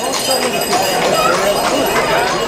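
Hooves of a cart horse clip-clopping on an asphalt street, about three strikes a second, over the talk of a crowd of onlookers.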